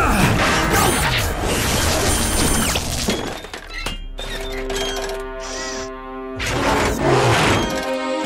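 Cartoon action soundtrack: the music score under a dense burst of metallic impact and clatter sound effects in the first three seconds, then a steady held chord for about two seconds, then another short burst of effects near the end.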